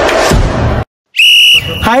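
Intro music cuts off just before a second in, and after a brief dropout a short, loud, high whistle tone sounds, held steady for about half a second.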